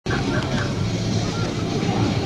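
People talking over busy outdoor background noise with a steady low hum.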